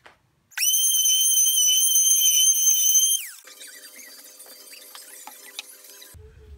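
A high-pitched motor whine, like a small power tool: it spins up sharply, holds one steady pitch for about two and a half seconds, then winds down in pitch as it stops. A much quieter low hum with small scattered noises follows.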